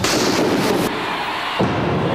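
Thunderclap sound effect: a sudden loud crack that rumbles on, its hiss cutting off just under a second in, with a second hit about one and a half seconds in.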